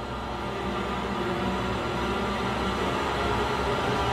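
Orchestral music of sustained chords over a low rumble, swelling steadily louder.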